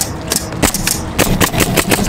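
Pneumatic roofing nailer firing nails through asphalt shingles in a quick run of sharp shots, several a second.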